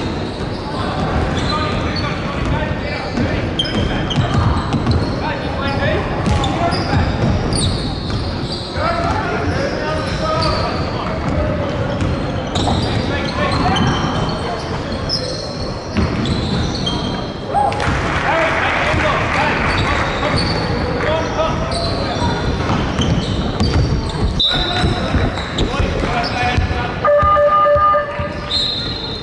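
Basketball game on a hardwood gym floor: the ball bouncing, with many short, high-pitched squeaks of sneakers on the court and players and spectators calling out, all echoing in a large hall.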